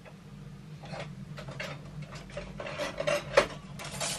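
Irregular metallic clinks and knocks of tools being handled and fitted together, the loudest knock about three and a half seconds in, over a steady low hum.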